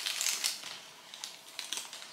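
Plastic snack wrapper crinkling as it is handled, with a burst of crackles at first and then scattered small crackles.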